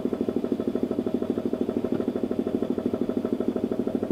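A motor running steadily with an even pulsing beat, about seven or eight beats a second.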